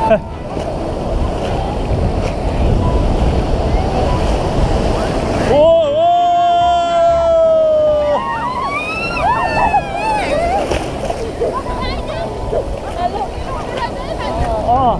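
Surf washing and foaming around the camera, with wind on the microphone. About five and a half seconds in, a long high shout held for a couple of seconds with slowly falling pitch, followed by shorter yells as a wave breaks over the camera.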